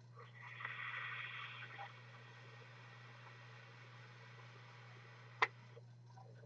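A long draw inhaled through a dripping atomizer on a vape mod: a faint airy hiss lasting about two seconds. Then a low steady hum and a single sharp click near the end.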